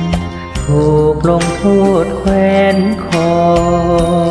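Karaoke singing in Thai over a backing track: a solo voice sings a phrase beginning about half a second in, over steady accompaniment.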